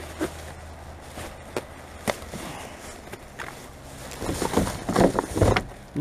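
Rummaging through rubbish by hand. A few light clicks and knocks come first. About four seconds in there are a couple of seconds of louder plastic-bag rustling and knocking. A steady low hum runs underneath.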